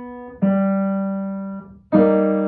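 Kawai grand piano playing slow single notes of a simple melody. A held note dies away, then a lower note is struck about half a second in and rings until it is let go near the end.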